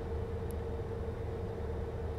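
Steady low hum and rumble inside a car cabin, with a thin steady tone running through it.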